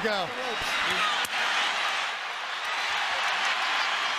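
Boxing arena crowd noise, an even roar of many voices, with a single sharp knock about a second in.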